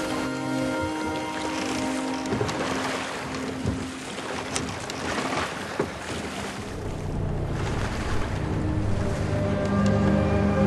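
TV soundtrack excerpt: dark score music built on low dissonant notes, mixed with the sound of water and a rowing boat. The low notes swell from about seven seconds in.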